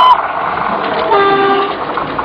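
Train horn sounding one short steady blast about a second in, over the steady running noise of the approaching train.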